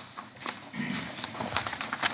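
A man's footsteps on a hard floor arriving at a lectern, then a sheet of paper being handled close to the lectern microphone: a few sharp knocks with rustling between them.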